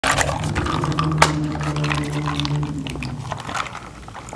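A plastic straw is jabbed through the sealed film lid of a bubble-tea cup with a single sharp pop about a second in, followed by sipping through the straw. A steady low hum is held for a couple of seconds underneath.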